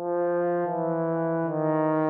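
A single low musical note held steadily, with a rich, brassy-sounding stack of overtones. It starts abruptly and dips slightly twice.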